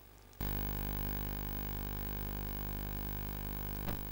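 A steady electrical buzzing hum, rich in overtones, that switches on abruptly about half a second in and holds unchanged.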